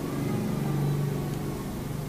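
A man's voice holding a low, steady 'ehh' for about a second: a hesitation sound between phrases.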